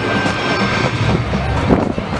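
Stadium crowd chatter and voices over a steady low rumble.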